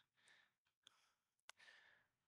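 Near silence: room tone with two faint clicks, the second about three-quarters of the way through, followed by a faint breath.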